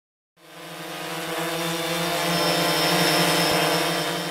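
A steady motor-like hum with a thin high whine above it, like an aircraft or drone engine, played as a title-card sound effect. It fades in from silence, swells to its loudest about three seconds in, then starts to fade.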